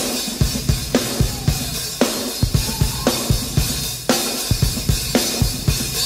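A live band's drum kit playing a steady rock beat: bass drum thumps with a sharp snare or cymbal hit about once a second.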